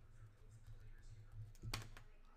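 Faint clicks and taps, with one sharper click near the end, over a low steady hum.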